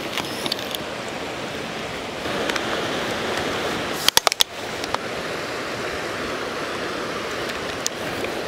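Steady rush of a forest creek and its small waterfall cascade. About halfway through, a quick run of four or five sharp clicks as a tripod is set up.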